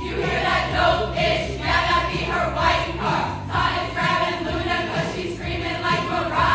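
A group of women singing together in chorus over backing music.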